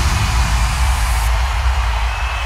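Transition in a dance-music DJ mix: the beat has dropped out, leaving a steady deep bass drone under an even wash of noise. The top of the noise cuts away about a second in.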